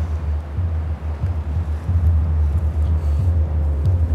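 A loud, low rumbling drone that wavers in level, with a faint held tone above it: the dramatic tension underscore of a film soundtrack.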